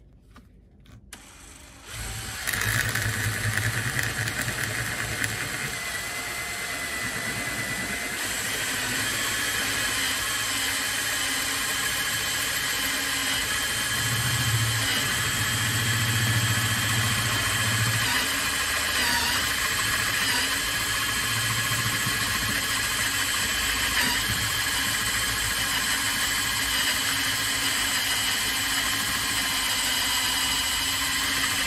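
A power drill starts about two seconds in and runs steadily with a high motor whine, its step drill bit boring out holes in a plastic enclosure toward 20 mm.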